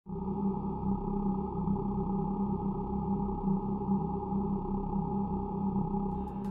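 A steady, low droning tone, several pitches held together without change, beginning abruptly.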